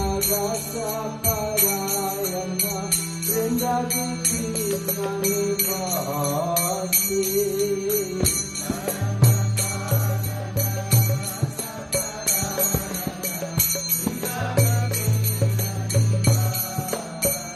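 Devotional chant sung by a single voice over a steady held drone, with small hand cymbals (karatalas) keeping an even beat.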